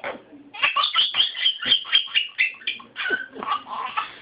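A baby laughing hard in a rapid run of short, high-pitched bursts, starting about half a second in.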